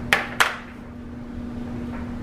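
Two quick, sharp knocks less than half a second apart from a plastic flour container being handled on the table, over a steady low hum.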